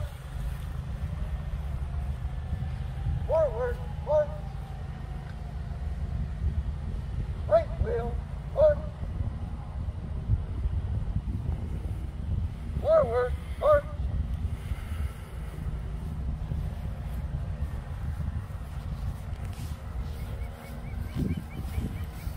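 Steady wind rumble on the microphone, with three brief groups of short shouted drill commands about 3, 8 and 13 seconds in.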